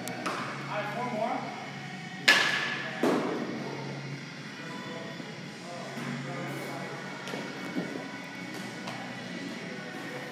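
A baseball struck sharply about two seconds in, with a short metallic ring and an echoing tail, then a duller thud about a second later.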